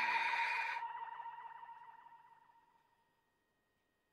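Synthesizer music's final held note, a wobbling, vibrato lead tone, fading out through its echo and reverb tail over about two seconds; the rest of the ending chord dies away in the first second.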